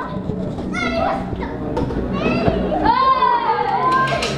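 A group of children shouting and calling out excitedly over a game of table football, with a few sharp knocks of the ball and rods on the table.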